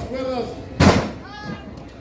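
A wrestler's body slammed down onto the wrestling ring's mat: one loud thud a little under a second in.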